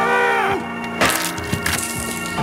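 A pitched vocal cry trails off in the first half second. About a second in, a sudden crash-like impact hits and leaves a noisy tail, over a steady low musical drone.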